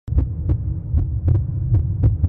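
Deep, throbbing bass hum with a sharp click about every half second.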